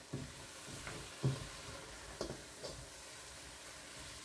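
Silicone spatula stirring chopped onion, peppers and browned pork chunks in a stainless steel pot, with a few soft knocks and scrapes against the pot over a faint sizzle of the sofrito softening on medium heat.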